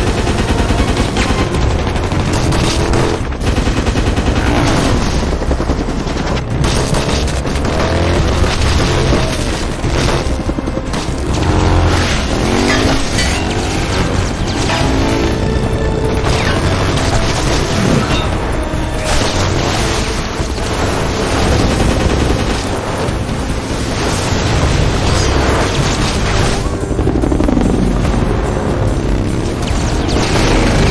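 Action film soundtrack: a helicopter door-mounted machine gun firing long bursts, with repeated booms of impacts and explosions, all under film score music.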